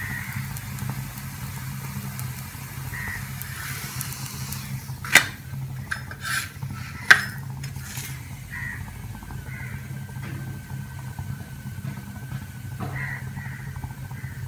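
Paratha frying on an iron tawa with a faint, steady sizzle over a low hum, and a metal spatula knocking sharply on the tawa twice, about five and seven seconds in, with a few lighter scrapes around them as the bread is turned.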